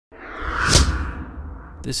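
Whoosh sound effect that swells up from silence and peaks in a hit with a low rumble about three-quarters of a second in, then fades away. A man's voice starts speaking near the end.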